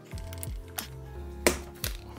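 Background music, with a few sharp clicks as a fingernail picks at an adhesive sticker on the monitor's screen edge.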